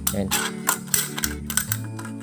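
Scissors snipping through a thin aluminium drink can: a series of sharp, crisp cuts about every quarter to half second, over steady background music.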